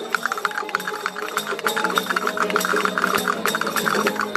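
Spanish folk string band playing a parranda, a seguidilla in triple time: strummed guitars and plucked twelve-string lutes in a steady, even rhythm, with a shaken wooden jingle instrument, as an instrumental passage.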